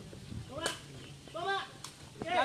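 A sepak takraw ball kicked by players' feet: two sharp cracks about a second apart, one shortly after the start and one near the end, with brief shouts between them.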